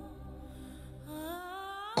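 Dramatic background score: a held, hum-like tone that sweeps upward in pitch over the last second.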